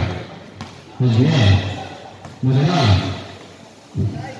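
Loud wordless shouts from a voice, repeated about every second and a half: one fading at the start, then two more about a second and two and a half seconds in, each swelling in pitch and dying away.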